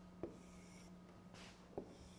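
Faint stylus writing on a touchscreen display: light scratching strokes of the pen across the glass, with two small taps of the pen tip, about a quarter second in and near the end, over a steady low hum.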